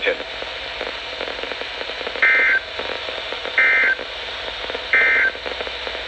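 NOAA Weather Radio receiver sounding the Emergency Alert System end-of-message data: three short bursts of warbling digital tones about a second and a half apart, starting about two seconds in, over steady radio hiss. The bursts mark the end of the storm surge watch alert.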